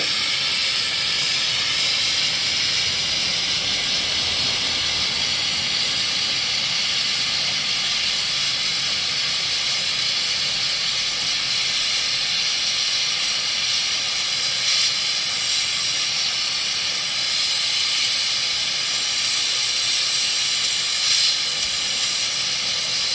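Oxygen and MAP-Pro fuel torch flame hissing steadily as it burns down into a homemade Verneuil flame-fusion furnace.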